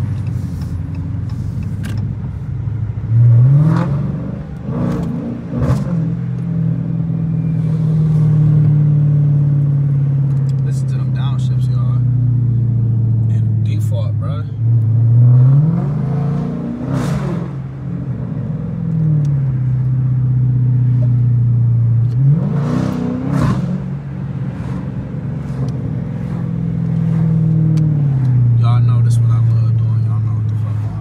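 Dodge Challenger R/T's 5.7-litre Hemi V8, heard from inside the cabin, accelerating three times. Each time the engine note climbs quickly, holds a steady drone while cruising, then drops back to a lower note.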